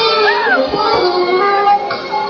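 Live concert band music: held, sustained chords, with a brief high voice rising and falling about half a second in.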